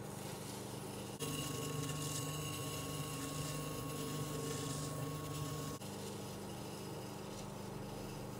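Electric potter's wheel running with a steady motor hum. About a second in the hum switches abruptly to a buzzier tone with a thin whine, and it switches back just before six seconds in.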